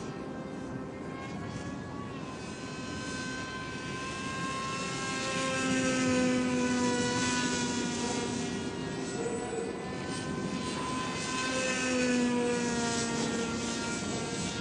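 Motor and propeller of a radio-controlled flying-wing model droning in flight, growing louder twice, about six and twelve seconds in, its pitch slowly falling each time.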